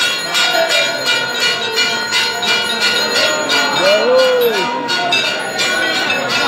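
Temple bells rung for an aarti, struck in a quick steady rhythm of about three strokes a second, with a crowd's voices underneath.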